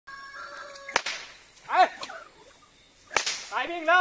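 A horse-training whip cracked twice, two sharp snaps a little over two seconds apart, used to urge a horse into moving for exercise. A short call is heard between the cracks, and a man's calling begins near the end.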